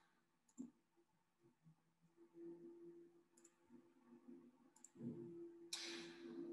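Near silence with a few faint clicks, two of them doubled, as the presentation slide is advanced, and a short soft rush like a breath near the end.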